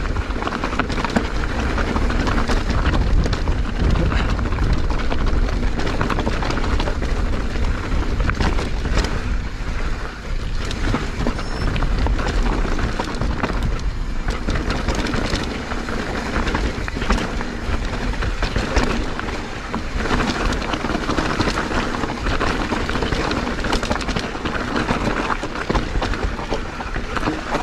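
Mountain bike descending a rough, stony track: tyres crunching over loose rock, with constant knocks and rattles from the bike as it is pounded over the stones, over a low wind rumble on the camera's microphone.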